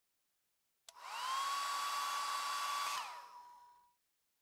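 Handheld hair dryer switched on with a click about a second in. Its motor whines up to a steady pitch over rushing air, then it is switched off about two seconds later and winds down, fading out.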